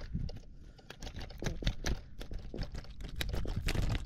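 Rapid, irregular clicking and tapping as a small black drum flaps on the line and against the angler's hand, starting about a second in.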